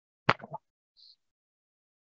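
A brief sharp pop with two softer knocks right after it, then a faint short hiss about a second in, with dead silence around them as on a noise-gated video call.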